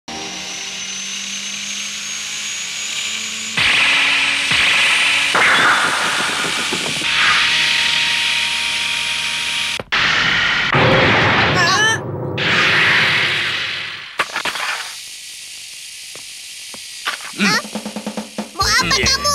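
Anime soundtrack: a run of noisy sound effects with music and short bursts of voice. A thin high whine rises slowly over the first few seconds, and the sound breaks off sharply near ten seconds.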